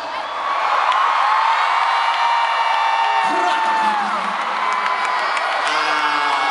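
Large concert crowd cheering and screaming, with long high-pitched screams held over a steady roar.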